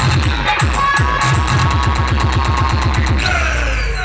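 Loud electronic dance music played through a large DJ speaker wall: a fast run of deep bass hits, each falling in pitch, then a held bass note near the end.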